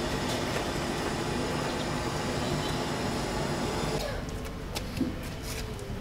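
Steady outdoor background noise with no clear single source. It drops quieter about four seconds in, after which a few faint clicks are heard.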